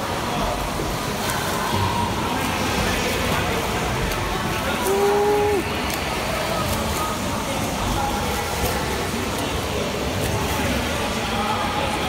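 Steady splashing of swimmers kicking and stroking through the water, with faint distant voices now and then.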